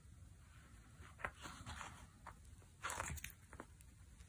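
Faint handling sounds: a few soft clicks and rustles as a metal prong-style magnetic snap is fitted into slots in a leather panel, with the strongest cluster of clicks about three seconds in.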